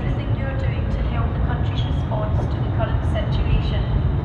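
Station public-address announcement over a steady low rumble as a TransPennine Express Class 397 Nova 2 electric train runs slowly in along the platform.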